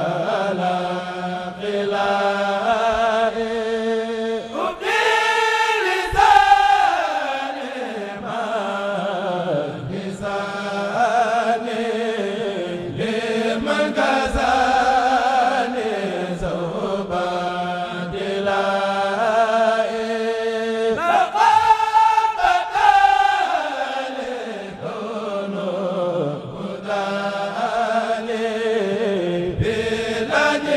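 A Mouride kurel, a choir of men, chanting an Arabic xassida (devotional qasida) in unison through microphones, unaccompanied, in long ornamented phrases. The chant climbs to a higher, louder phrase about five seconds in and again about twenty seconds in.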